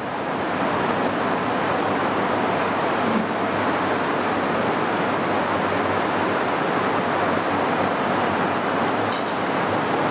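A steady rushing hiss, even and without tones or beats, that swells over the first second and then holds level.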